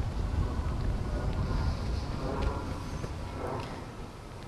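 Outdoor background noise: a low rumble on the microphone with a faint haze above it, slowly fading toward the end.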